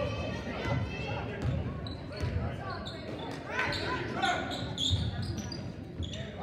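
A basketball being dribbled on a hardwood gym floor, a low bounce about once a second, among voices of players and spectators echoing in the gym.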